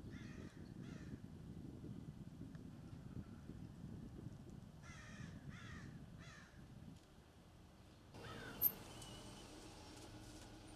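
A bird calling in short harsh notes, two calls near the start and three more about five seconds in, over a steady low rumble. There is a single sharp click-like sound near the end.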